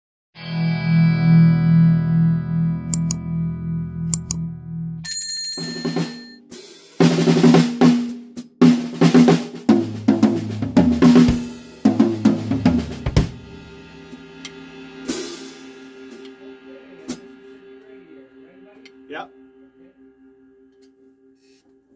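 Blues-rock band music. A held chord pulses steadily for about five seconds, then a run of loud drum-kit fills with snare, toms and cymbal crashes. After that a chord rings on and slowly fades.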